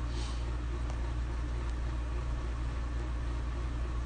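A steady low hum, with a short faint scrape right at the start and a couple of light clicks.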